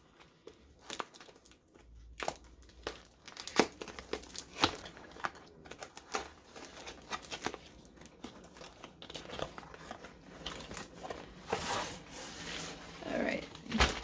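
Packaging crinkling and rustling as a rolled diamond-painting canvas is unwrapped and pulled out, with irregular taps and clicks that grow busier in the last few seconds.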